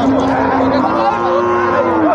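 Cattle mooing: one long, drawn-out call that jumps higher in pitch about a second in and holds there, over the chatter of a crowd.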